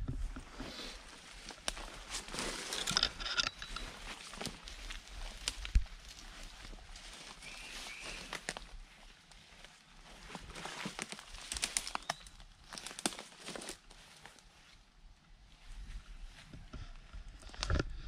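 Rustling and footsteps through leafy undergrowth, with irregular crackles and brushes of leaves and stems.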